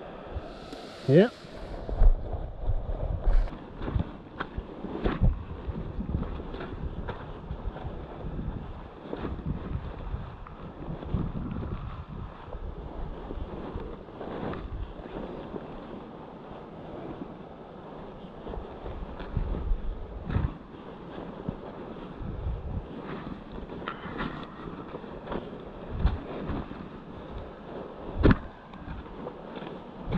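Wind buffeting the microphone in gusts, a steady low rumble broken by irregular knocks and thumps.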